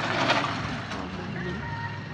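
A motorcycle passing along a cobblestone street, loudest at the start and fading as it goes by. A faint steady high tone comes in near the end.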